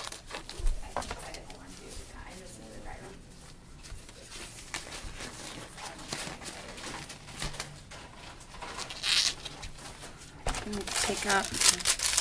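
Disposable exam gloves being pulled onto the hands: irregular rustling with small snaps and clicks, and a brief swish about nine seconds in.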